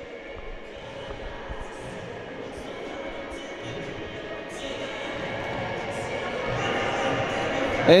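Sports-hall ambience during a basketball game: indistinct voices and faint music echoing in the hall, growing gradually louder.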